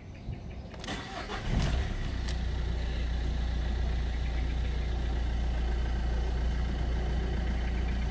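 Nissan Qashqai engine started with the key, heard from inside the cabin: the starter cranks briefly about a second in, the engine catches, and it settles into a steady idle at about 1,000 rpm.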